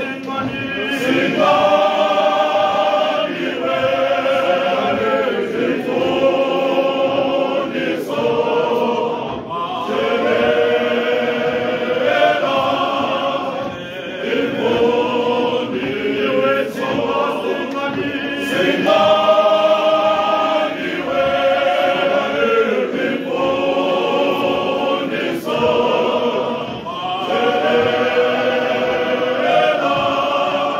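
Male voice choir singing a cappella in harmony: long held chords in phrases of a second or two, with short breaks between them.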